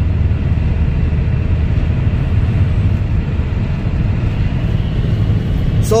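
Steady road noise inside a car driving at highway speed: a low rumble with an even hiss above it, unchanging throughout.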